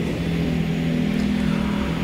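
A steady low hum with an even low rumble under it, with no voice.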